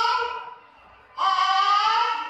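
A young girl singing into a microphone: a long held note that slides slightly upward fades out about half a second in, and a second rising held note begins a little after a second in.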